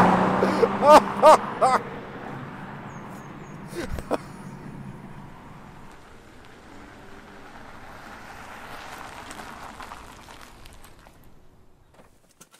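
BMW M340i's turbocharged straight-six petrol engine as the car drives past at speed, loudest at the start and then fading away, with a man's short excited "oh" exclamations over it in the first two seconds. A lower, steady road and engine sound follows, dying away to quiet near the end.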